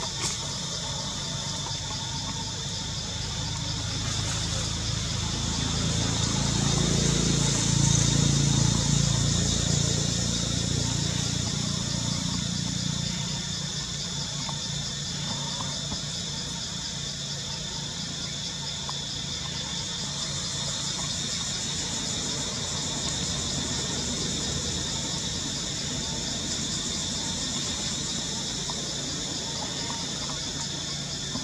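A steady, high-pitched buzzing chorus of insects in the trees, with a low engine rumble from a passing vehicle that swells about five seconds in, peaks around eight seconds and fades away by about thirteen seconds.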